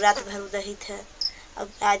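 A woman speaking over a steady low drone, with two brief high chirps about a second apart.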